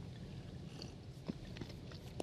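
Quiet studio room tone with a low hum and a few faint short clicks a little past halfway.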